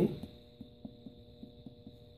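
Abdominal percussion: soft, quick finger taps on a person's belly, one finger striking another laid flat on the abdomen, about four to five taps a second, as a fast general survey of resonant and dull areas. A faint steady hum runs underneath.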